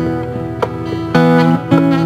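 Acoustic guitar music built from live loops: plucked notes and chords ringing over one another, with a louder chord struck about a second in.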